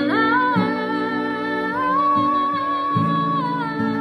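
A young woman singing a slow melody over her own strummed acoustic guitar, holding one long note for more than a second midway through.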